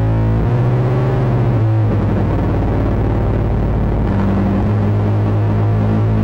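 A rock band playing live, with an electric bass holding long low notes that shift pitch a few times under the rest of the band.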